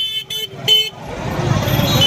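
Vehicle horn tooting in several short blasts in the first second, then street noise swelling louder.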